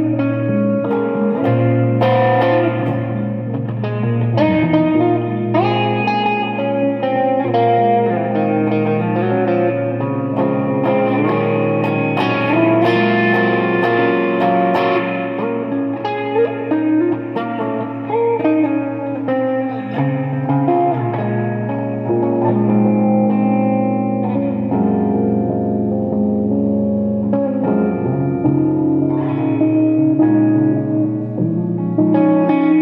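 Extended-range electric guitar played through effects with reverb: long held low notes under a picked, moving melodic line.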